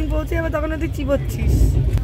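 Steady low rumble of a moving passenger train heard inside a sleeper coach, with passengers' voices over it for the first second or so.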